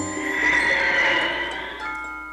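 Cartoon soundtrack: a wavering, swelling magic sound effect over music as the flying top hat brings the snowman to life. It fades, and a sustained orchestral chord comes in near the end.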